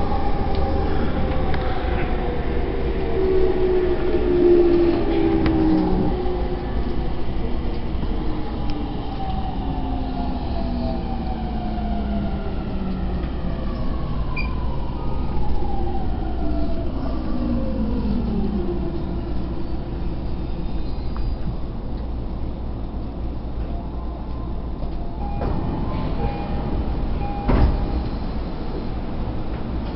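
Electric train heard from inside the car, running with a steady rumble from the wheels on the rails. Over the first twenty seconds the motor whine glides down in pitch in several tones, and there is a short sharp knock near the end.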